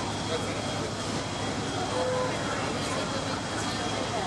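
Indistinct voices talking over a steady, even background noise; no single event stands out.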